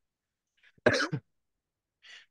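Near silence, broken about a second in by one brief vocal burst from a man, a short laugh or throat-clear sound lasting under half a second.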